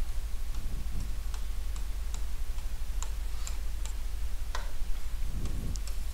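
A stylus tapping against an interactive display screen while drawing a dashed line: about a dozen light, sharp ticks at uneven spacing, over a steady low hum.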